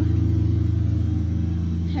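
Lawn mower engine running steadily in the background, a constant low hum.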